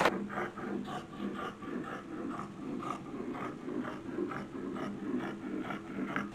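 Steel dressmaking shears cutting through fabric and a pinned paper pattern, a run of short snips at about three a second.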